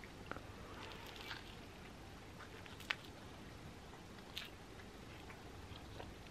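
Faint chewing of a crumpet thin, with a few soft mouth clicks and one sharper click about three seconds in.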